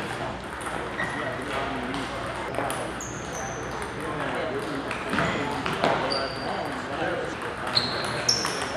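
Table tennis balls clicking off paddles and tables, scattered and irregular, several hits ringing with a short high ping, over a background murmur of voices.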